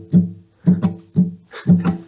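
Acoustic guitar strummed in short, choppy chord strokes that are damped almost at once, in groups of three about once a second. This is a reggae-style percussive strum, with the fretting hand lying softly on a barre chord so the notes don't ring on.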